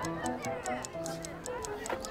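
Background music with a fast, even ticking like a clock, a countdown sound effect running under the music.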